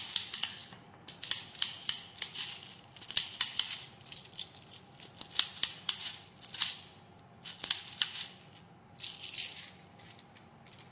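Plastic airsoft BBs clicking and rattling as they are pushed from a clear plastic speed loader into a Sig Air P320 M18 green gas pistol magazine. The clicks come in quick irregular runs with short pauses, and a short softer rattle follows near the end.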